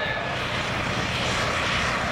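Steady, even drone and rush of a high-powered car engine heard from far down a runway: the twin-turbo 4.6 Mustang out near the end of its pass.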